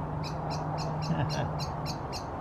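A small bird calling a short high chirp over and over, about five times a second and very evenly, with a steady low hum underneath.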